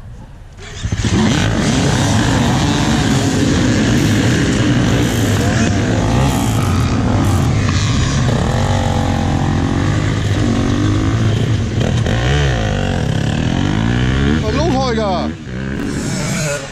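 A field of enduro dirt bikes starting together at a race start: many engines burst into life about a second in and rev hard as the riders pull away, several pitches rising and falling across one another. The sound drops sharply near the end.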